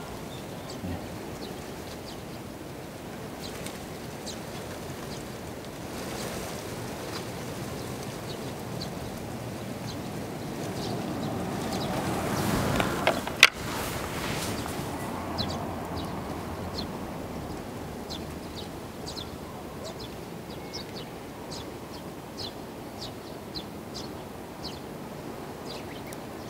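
Birds chirping, short high calls repeating many times, busiest in the second half. Around the middle a rushing noise swells and fades, with one sharp click about halfway through.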